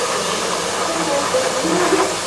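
Steady hissing from pots cooking on a gas stove.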